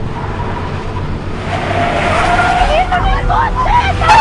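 A car driving close by, its low engine rumble growing stronger, joined about halfway through by high, wavering squeals that bend up and down.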